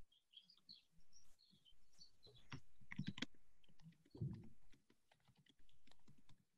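Faint typing on a computer keyboard, irregular key clicks heard over an open video-call microphone.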